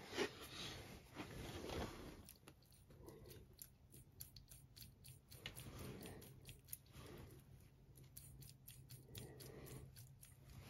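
Faint metallic clicks and scrapes from a 5-inch gauge model steam locomotive's crank axle, eccentrics and rods as one driving wheel is turned by hand while the other is held still. The axle turning between its wheels is the sign of a loose crank axle, which the owner is fairly sure has worked loose at the web on the stub axle.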